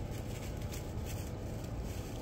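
Low, steady outdoor background noise, with no distinct sound standing out.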